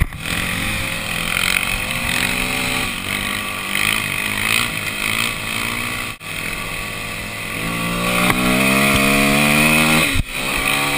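Dirt bike engine heard from on board while riding, its pitch shifting up and down with the throttle. There is a brief sharp drop in sound about six seconds in, and the engine climbs in pitch and grows louder over the last two seconds as it accelerates.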